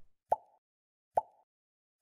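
Short cartoon pop sound effects, two about a second apart in silence, accompanying an animated subscribe-and-like end screen as its icons are clicked.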